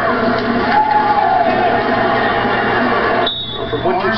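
Arena crowd noise mixed with music from the public-address system, heard through a television's speaker. The sound drops off abruptly a little over three seconds in.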